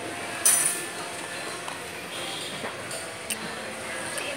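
A metal spoon clinking: one sharp, ringing clink about half a second in and a lighter one near the end, over background chatter.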